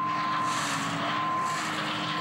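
Tractor-mounted Langlois grapevine stripping machine running, its hydraulically driven pinch wheels and shredder pulling out and chopping unwanted canes: a steady mechanical noise with a constant high whine.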